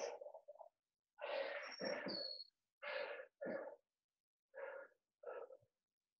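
A person's hard breathing after exertion, heard faintly over a video call: about five short, voiced breaths or gasps, each cutting off to silence before the next.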